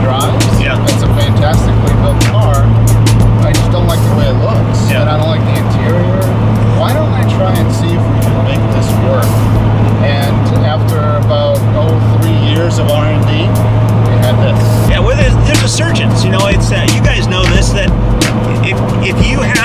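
Steady low engine drone and road noise inside the cabin of a Magmotors Shelby GT500 rebody on a 2014 Shelby GT500 chassis while it drives, with background music and talk over it.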